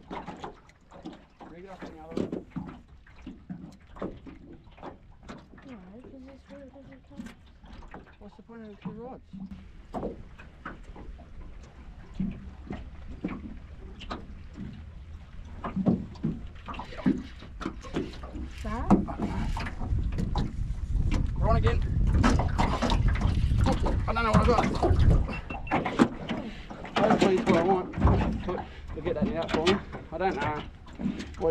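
Indistinct low talking that grows louder in the second half, over a steady low rumble and scattered short clicks and knocks.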